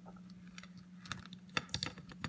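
Hands rummaging through a plate of liquorice allsorts, the sweets and toy figures clicking and clattering against each other and the plate, in scattered small clicks that bunch together and get louder a little past halfway.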